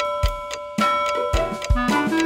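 Bright bell strikes over the nursery song's instrumental backing, about two strikes a second, each leaving a ringing tone: a cartoon clock chiming the hour.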